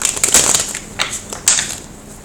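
Tarot cards being shuffled and handled close to the microphone: a few quick papery crackling swipes over about a second and a half, then stopping.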